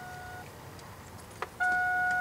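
A steady high electronic tone, like a beep held on one pitch. It cuts off about half a second in and comes back louder near the end, over faint background noise.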